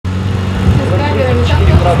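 A steady low hum runs throughout, with people's voices over it from about a second in and a first greeting at the very end.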